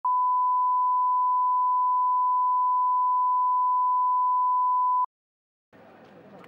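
Broadcast line-up test tone: one steady 1 kHz beep under colour bars, held for about five seconds and then cut off abruptly, followed by a moment of silence.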